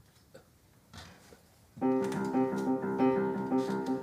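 A quiet pause, then a little under two seconds in, a piano begins the song's introduction with held chords.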